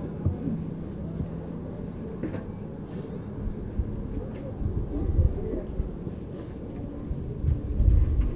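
Crickets chirping, short high chirps in pairs and threes about twice a second, over a low steady rumble.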